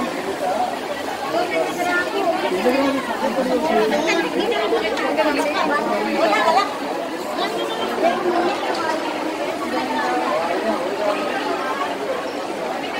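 Crowd chatter: many people talking at once in a busy indoor mall, a steady babble of overlapping voices with no single clear speaker.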